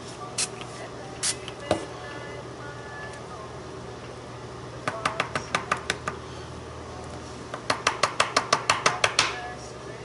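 A small Heidi Swapp mica ink spray bottle gives two short spritzes in the first second or so. Two quick runs of light sharp taps or clicks, about eight a second, follow about five seconds in and again near the end, and these are the loudest sounds.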